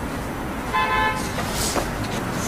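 A short car horn toot about three-quarters of a second in, over steady street traffic noise.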